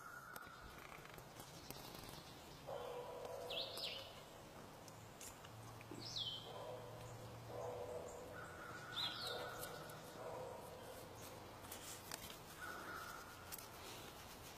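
Birds calling in the trees: a series of repeated calls about a second long, with three short high chirps that sweep downward.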